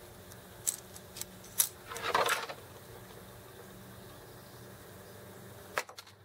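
Small metal clicks of a fishing swivel clip being unclipped and handled by hand: three sharp clicks about a second in, a brief rustle around two seconds, and one more click near the end.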